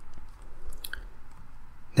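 A few faint, scattered clicks from a computer keyboard, over a low steady room hiss.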